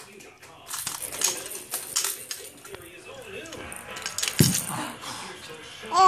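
Small plastic baby toys clicking and rattling as they are handled, with a short wavering baby coo midway and one sudden, louder sound about four and a half seconds in.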